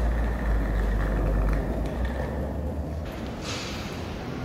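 Hard-shell suitcase's wheels rolling over a concrete floor: a steady low rumble that eases about two seconds in. A short hiss follows near the end.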